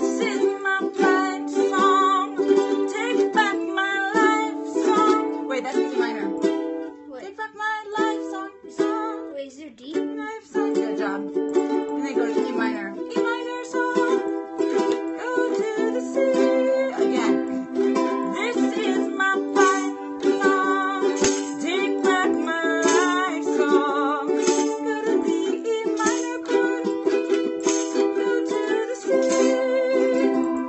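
Two ukuleles strumming chords together. About eight seconds in the playing briefly falters and thins out, then picks back up.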